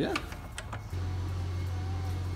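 A few light clicks and taps of work on the engine, then a steady low hum that starts about a second in.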